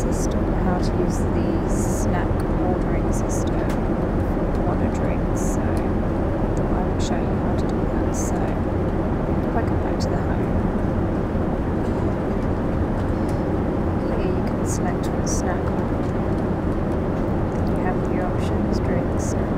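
Steady in-flight cabin noise of a Boeing 787 Dreamliner: an even, low rumble of engines and airflow, with scattered faint clicks.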